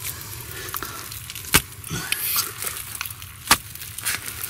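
Wet mud being worked by hand at a dig, a dense crackle of small ticks, with two sharp clicks about one and a half and three and a half seconds in.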